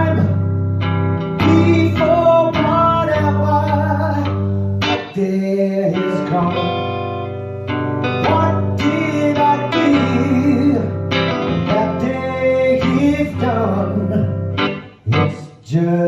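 Live ballad: a hollow-body archtop guitar, plausibly a Peerless, played through a Fender amp, with a man singing over sustained chords. The sound drops away briefly near the end.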